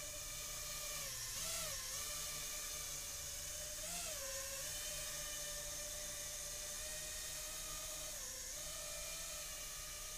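Small FPV racing quadcopter with 2205 2350KV brushless motors and DAL four-blade props hovering: a steady, really quiet whine whose pitch rises and dips briefly a few times as the throttle is nudged.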